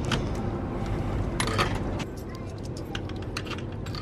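Coins clinking as they are fed into a drink vending machine's coin slot: a cluster of sharp clicks about a second and a half in, then lighter clicks near the end, over a steady low hum.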